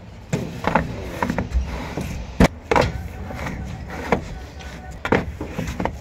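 Cut marble strips being stacked by hand: a series of sharp stone-on-stone knocks and clacks, the loudest two close together about two and a half seconds in.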